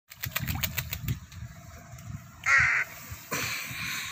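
A crow bathing in a shallow puddle: a quick run of splashes in the first second as it flutters in the water, then one harsh caw about two and a half seconds in, and a second, rougher sound near the end.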